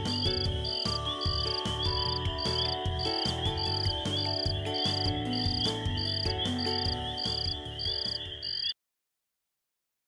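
Night-time cricket sound effect: a chirp about twice a second over a steady insect trill, mixed with soft background music of held notes and a low pulsing bass. Everything cuts off suddenly near the end, leaving silence.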